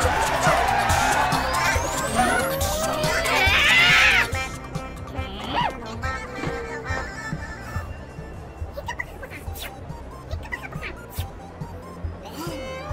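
Cartoon soundtrack: background music layered with slapstick sound effects and wordless character vocal noises. It is loud and busy for the first few seconds, with a rising whistle-like sweep, then cuts off suddenly into a quieter stretch with scattered small clicks and short blips.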